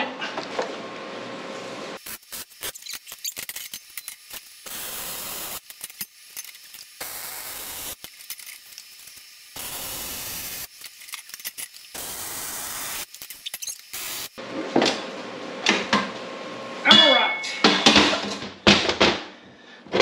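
MIG welder laying a series of short welds: bursts of arc hiss and crackle about a second each, with short pauses between them. Near the end there are a few metal clinks.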